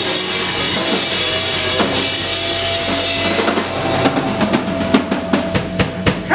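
Rock band playing live, led by a drum kit: bass drum, snare and cymbal hits that come thick and fast in the second half, over a long held high note from the band.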